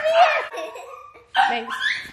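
A woman laughing briefly, then calling to a dog.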